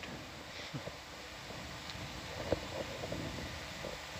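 Steady low background noise with a faint click about two and a half seconds in.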